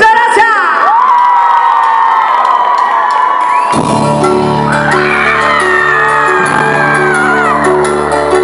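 A concert crowd whooping and cheering with long high shouts, then about four seconds in the cumbia band kicks in. The bass and keyboard play a steady repeating rhythm while the crowd keeps shouting over it.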